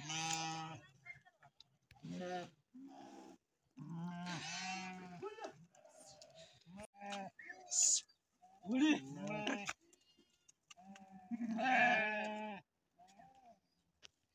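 A flock of sheep bleating, call after call with some overlapping, pausing briefly about ten seconds in.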